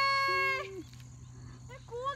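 Two women cheering with long, steady held calls, one higher and one lower. The higher one ends just over half a second in and the lower one fades soon after. After that there is a quieter stretch with a faint low hum until laughter starts near the end.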